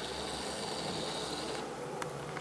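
Quiet room tone: a steady low hiss with a faint high whine that stops about a second and a half in.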